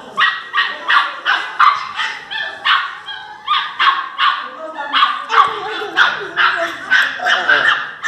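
Two pinschers, a tan puppy and a black adult, barking and yipping at each other in an aggressive face-off, with a rapid run of short barks about two or three a second.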